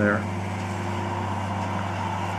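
Flory tracked orchard mulcher's 450-horsepower engine and front hammer mill running steadily while shredding walnut prunings, a constant low drone.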